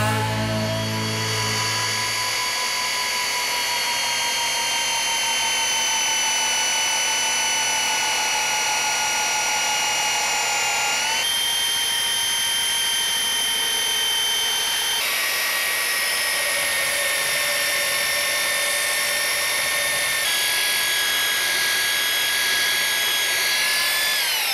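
Bosch 1278VS compact belt sander running: a steady high-pitched motor whine with the rasp of the belt on painted wood. Its pitch shifts a few times, and it starts to wind down right at the end.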